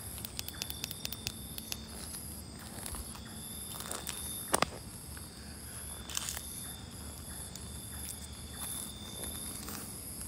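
Night insects chirping in a steady, high, pulsing chorus about twice a second. Over it come a quick run of light clicks and crackles early on and one sharp click about halfway through, the loudest sound.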